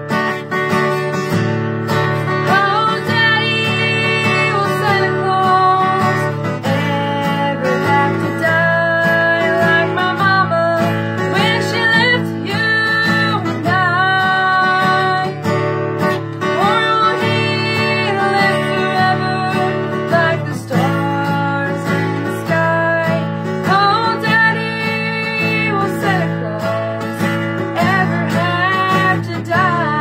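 Acoustic guitar strumming chords with a mandolin, playing the instrumental introduction to a slow country song.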